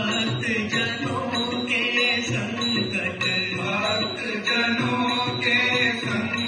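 Background music: a song with a chant-like singing voice over instrumental backing.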